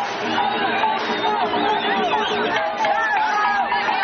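A dense street crowd: many voices talking and calling out over one another, with music underneath.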